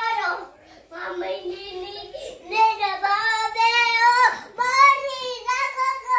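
A toddler singing in a high voice, a string of short phrases with drawn-out, wavering notes.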